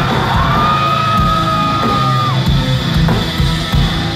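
Live heavy metal band playing loud, with distorted guitars, bass and drums. The vocalist rises into one long high yelled note, holds it for about two seconds, then drops off.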